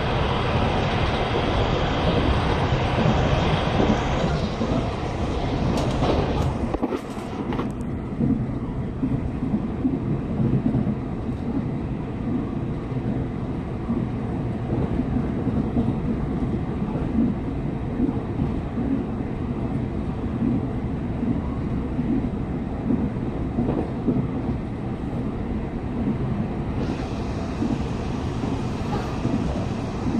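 Interior running noise of a Taiwan Railway E1000 push-pull Tze-Chiang express carriage at speed: a continuous rumble of wheels on rail. It is loud and hissy at first, with a brief clatter of clicks about six or seven seconds in, then settles to a lower, steady rumble.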